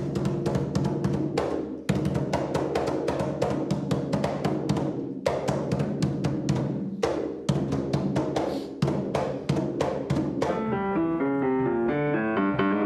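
Tumba Francesa hand drums, rope-tensioned drums with skin heads, struck with bare hands in a fast, driving rhythm of many sharp strokes. About ten and a half seconds in, the drumming stops and piano notes take over.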